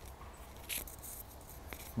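Quiet woodland with a faint steady low rumble, and footsteps rustling in dry leaf litter, with one short crunch a little under a second in.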